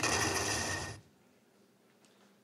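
A soft-tip dart strikes an electronic dartboard with a sharp click, and the machine plays about a second of hissy electronic sound effect as it scores a triple 20. The effect cuts off sharply.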